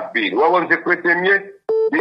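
A voice talking over a telephone line. It breaks off, and a short buzzing telephone tone sounds near the end.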